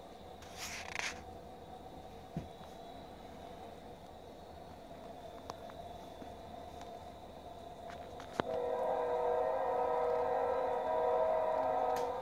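A steady droning hum that gets clearly louder after a sharp click about eight seconds in, with a brief scratchy rustle near the start.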